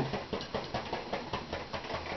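A paintbrush tapping and dabbing on a canvas, a quick irregular run of small ticks and scratches.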